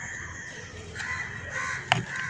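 Bird calls in the background: two calls about a second in, then a single sharp click near the end.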